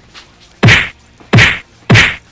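A head being slammed against a wood-panelled wall, three loud thuds about two-thirds of a second apart.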